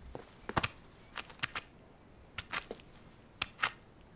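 A scattering of short, light clicks and taps, about ten of them at irregular intervals: cartoon sound effects.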